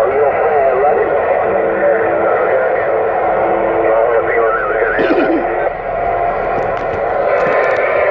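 Garbled voice transmissions over a CB radio speaker, cut off in the treble and mixed with static and wavering whistle tones, with a steady tone held for a couple of seconds early on.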